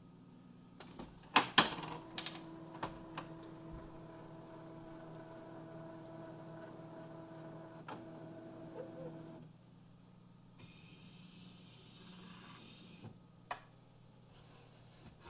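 Canon PIXMA MP190 inkjet printer: two loud clacks as its scanner unit is lifted open, then an internal motor runs with a steady hum for about eight seconds and stops. A few light plastic clicks near the end as the ink cartridges are handled.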